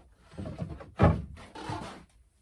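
Wooden battens being handled, knocking and rubbing against each other and the bed frame, with the loudest knock about a second in.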